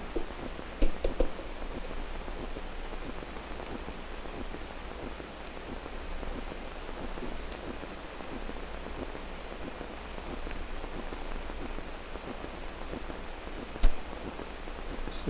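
Steady hiss of an old 16 mm film soundtrack, with a few sharp clicks about a second in and another just before the end.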